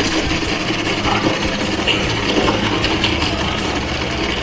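Electric ice shaving machine running steadily, its motor turning and shaving ice into a bowl held under the chute.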